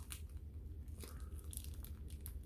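Faint crackling and clicking of a clear plastic wax melt pack being handled close to the microphone, over a steady low hum.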